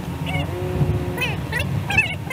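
Steady road noise inside a moving car, with short pitched calls over it that bend up and down in pitch.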